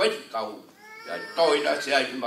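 A man speaking over a microphone in a hall. About a second in, between his phrases, there is a brief high-pitched call that falls slightly in pitch.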